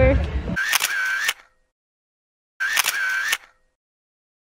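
Camera shutter sound, heard twice about two seconds apart, each one short, with dead silence between them.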